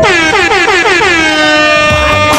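A loud horn sound effect, like an air horn, whose pitch slides down over about a second and then holds, while the backing beat drops out.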